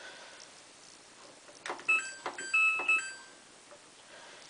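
Samsung WF8804RPA washing machine's control panel beeping as its buttons are pressed: a few short electronic beeps at two or three pitches, each with a light button click, starting a little under two seconds in.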